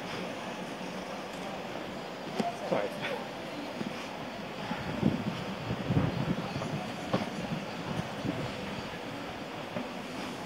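City street noise heard from a moving bicycle: a steady traffic rumble, with louder, irregular rumbles and rattles in the middle.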